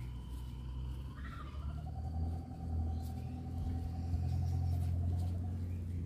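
A low engine rumble with a steady hum, growing louder about two seconds in and easing off near the end, like a motor vehicle running close by.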